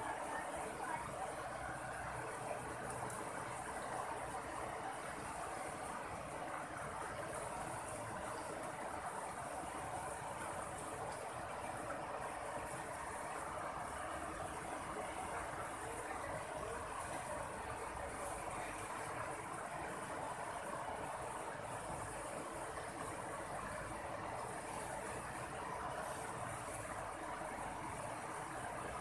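Steady rush of a shallow river running over rocks and small rapids, with a faint high insect buzz above it.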